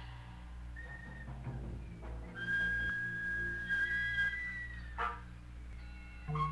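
Live jazz band playing: a low bass line runs underneath while a high, whistle-like note is held for about two seconds in the middle, followed by a short sharp accent near the end.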